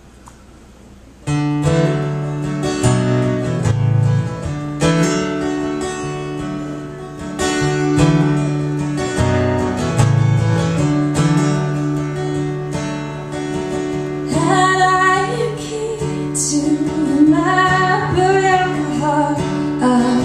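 Acoustic guitar strumming chords to open a song, starting about a second in. A woman's singing voice joins over the guitar about two-thirds of the way through.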